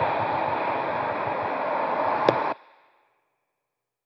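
Steady hiss and rustle of outdoor noise on a handheld phone's microphone, with a single sharp click a little over two seconds in. The sound then cuts off abruptly to silence as the recording stops.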